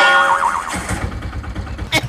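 A vehicle's ignition key turning and its engine starting. A wavering whine comes first, then the engine catches and runs with a low, even chug from about a second in.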